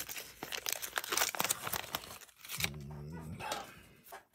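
Paper wrapping of a card pack crinkling and tearing as it is pulled open by hand, in quick irregular crackles, then a brief low hummed voice near the end.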